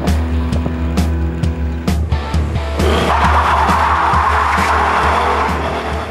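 Background music with a steady beat, joined about halfway through by the rear tyres of a Ford Mustang GT squealing and skidding as the car spins donuts.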